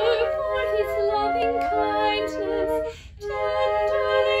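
A soprano voice singing a hymn tune, with three flutes playing the other parts in chordal harmony. All the parts break off together for a breath about three seconds in, then come back in.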